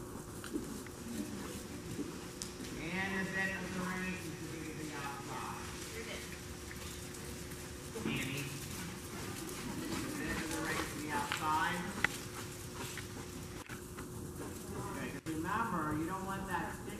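Indistinct voices talking on and off, with horses walking on the dirt footing of an indoor arena and their hooves thudding now and then.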